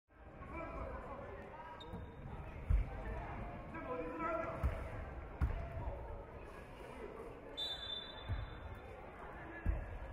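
Basketballs bouncing on a hardwood court in a large arena: about half a dozen irregular thuds, with faint voices talking in the hall.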